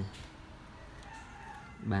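A faint drawn-out bird call in the background, between a man's spoken counts at the start and the end.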